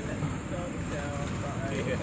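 Faint voices of people talking in the background over steady low outdoor noise.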